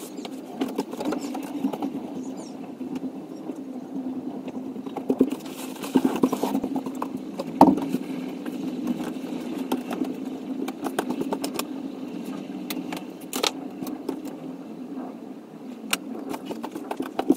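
Sounds of tidying a room: scattered rustling, clicks and knocks as bedding and belongings are handled and moved, with one louder thump about seven and a half seconds in, over a steady low hum.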